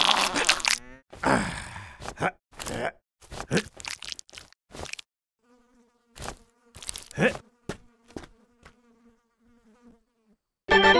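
Cartoon sound effects: a gorilla's straining grunts and short rustling and plopping sounds over the first half. Then a fly buzzes in a steady drone from about halfway through, with a few short rustles over it.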